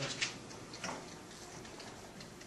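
Light, unevenly spaced ticks and taps of pencils writing on paper on classroom desks.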